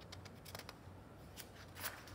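Faint rustling of a picture book's paper page being turned, with a few soft crisp ticks of the paper, the clearest about half a second in and near the end.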